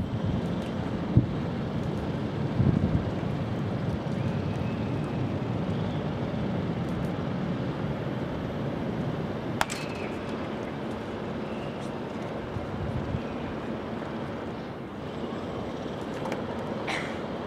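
Steady wind noise on the microphone, with one sharp crack about ten seconds in: a bat meeting a batting-practice pitch.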